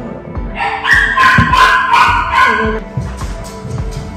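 A small dog yapping, a quick run of high-pitched yaps lasting about two seconds, heard over background music with a steady beat.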